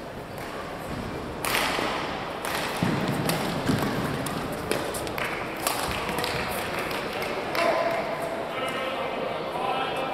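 Badminton doubles rally: rackets hitting the shuttlecock in sharp cracks several times, with footfalls thumping on the court and voices in the hall.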